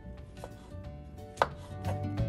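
Kitchen knife slicing fresh button mushrooms against a cutting board: a few separate cutting strokes, the loudest about one and a half seconds in.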